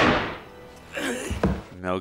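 Film soundtrack through a reaction video: the ringing tail of a loud bang fading away, followed near the end by a man's voice speaking.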